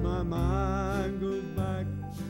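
A man singing a country gospel song with a wavering vibrato, accompanying himself on an acoustic guitar.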